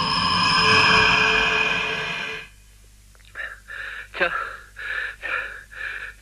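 A loud, steady electronic sound effect with several held pitches, which cuts off suddenly about two and a half seconds in. After a short pause it is followed by a man's rapid, shallow gasps for breath inside a space helmet, about three a second: his damaged space suit is losing air.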